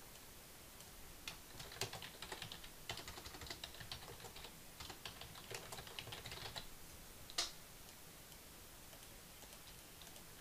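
Faint typing on a computer keyboard: a run of quick keystrokes over about five seconds, then a single louder click a couple of seconds before the end.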